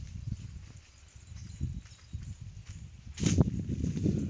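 Wind buffeting a phone microphone outdoors: an uneven low rumble that grows louder about three seconds in.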